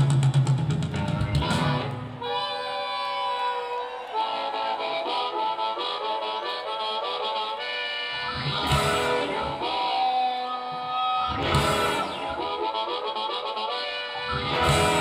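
Live band music with a harmonica taking the lead, playing held and bending notes over the band. There are two loud short accents, about eight and a half and eleven and a half seconds in.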